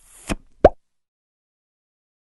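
Short pop sound effect closing an animated logo intro: a faint tick, then a louder quick blip rising sharply in pitch just over half a second in.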